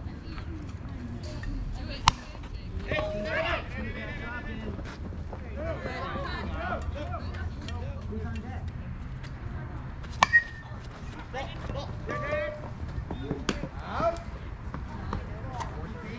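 A softball bat cracks against a pitched ball with one sharp, loud hit about two seconds in, followed by players' voices shouting and calling out. A second sharp smack comes about ten seconds in.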